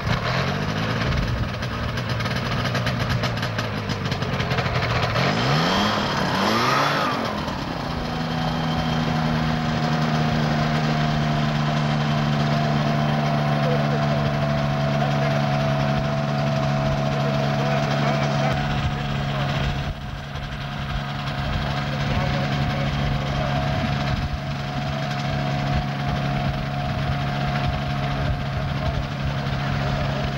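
The engine of a motorized hang glider trike revs up and down for the first several seconds, then settles into a steady idle that runs on to the end.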